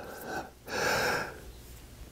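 A man drawing a breath in through his mouth, one short audible inhalation a little under a second in, between phrases of speech.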